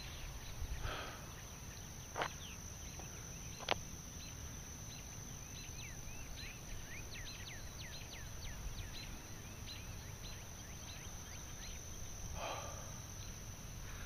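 Faint rural ambience: a steady high insect drone throughout, with a bird twittering in a quick run of short falling chirps in the middle. Two sharp knocks sound in the first four seconds.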